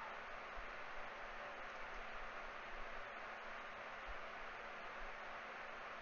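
Steady low background hiss with a faint steady hum underneath: room tone between remarks, with no distinct sound event.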